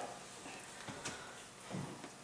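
Quiet room with a few faint knocks and clicks from objects being handled, and a soft low thump near the end.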